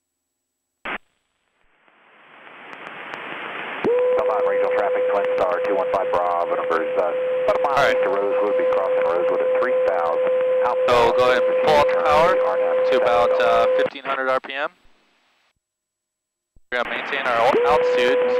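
Aviation radio traffic heard through the aircraft's audio feed, thin-sounding and clipped at the top. A click and a rising hiss open it. Then comes a voice transmission with a steady tone running under it, cutting off near the end; after a short silence a second transmission with the same tone starts.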